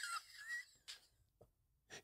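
Near silence: room tone, with a faint brief high squeak in the first half-second and a soft tick about a second in.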